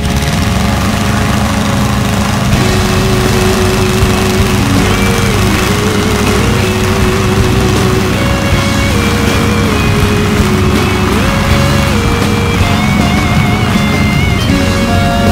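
Small piston engine of an amphibious ultralight seaplane running steadily on the ground, its pusher propeller turning, with music laid over it.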